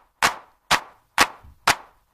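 Four sharp percussion hits, evenly spaced about two a second, each dying away quickly with silence between: a clap or stick-clack count-in opening a DJ remix of a Telangana folk song.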